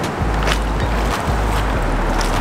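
Shallow water splashing and sloshing as hands work a submerged plastic fish trap and set a heavy rock onto it, with a sharp splash or knock about half a second in. A low rumble runs underneath.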